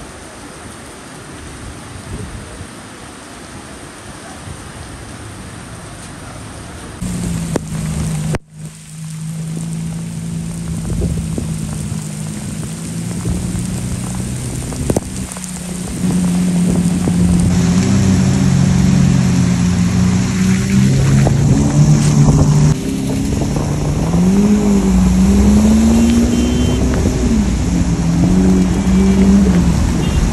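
Rain and road noise, then from about 7 s the V12 engine of a Lamborghini Aventador running with a steady low tone. The engine gets louder from about 16 s, and its pitch rises and falls in the last few seconds as it is revved while driving on a wet road.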